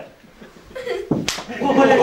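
A single sharp slap a little past halfway, a blow struck in a circle hitting game, with men's voices around it.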